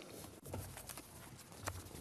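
A few soft knocks and clicks at irregular intervals over faint room tone, in a pause between speakers.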